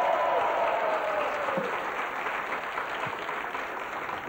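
Studio audience applauding, tapering off toward the end, with a long falling note heard over the clapping in the first second and a half.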